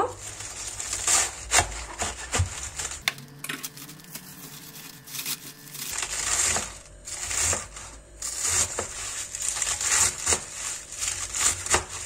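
Kitchen knife slicing raw white cabbage on a plastic cutting board: a run of crisp, crunchy cuts through the leaves, each with a light tap of the blade on the board.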